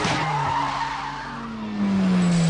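Car tyres squealing on tarmac, then a low engine note falling steadily in pitch, as a sound effect in a car advert's soundtrack while its rock music briefly drops away.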